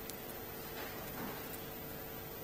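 Faint steady hiss with a constant low hum from the sound system, and three faint clicks of laptop keys being typed.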